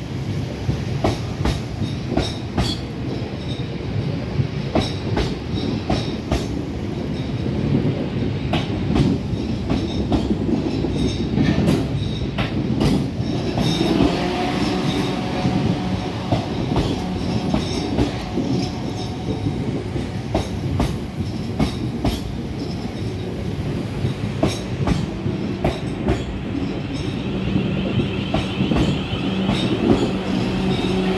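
South Western Railway passenger train running along the platform, a steady rumble of wheels on rails with irregular sharp clicks from the wheels over the track and a faint steady hum.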